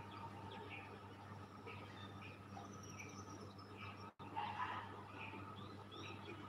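Faint small-bird chirps, short and repeated about twice a second, over a steady low hum.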